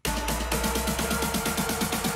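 Future house build-up played back: a fast, even roll of drum hits, about eight a second, over a steady deep sub bass and held synth tones.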